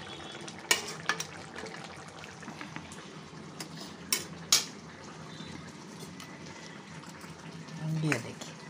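A metal spatula stirring jackfruit curry in an aluminium kadai, with a few sharp clicks of metal against metal.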